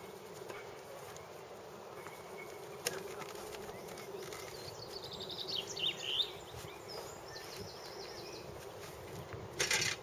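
A steady buzzing hum runs throughout. A few faint high chirps come around the middle, and a single sharp click about three seconds in.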